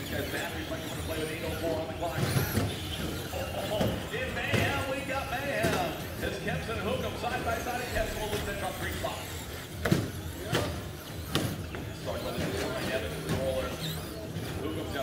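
Traxxas Slash electric RC short-course trucks racing: motor whine rising and falling, with sharp knocks from landings and impacts about ten to eleven seconds in, over indistinct voices and music.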